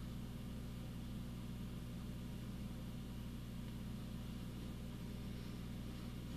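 Steady low hum with a faint hiss underneath: background room tone picked up by the microphone, with no events in it.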